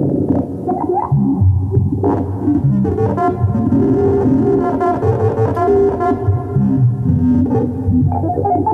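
Moog Matriarch semi-modular analog synthesizer played dry, with no effects: overlapping low and mid-pitched notes that keep changing pitch, with a sharp attack about two seconds in.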